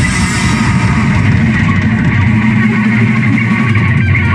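Live punk band playing loud: distorted electric guitars, bass guitar and drum kit, steady and dense without a break.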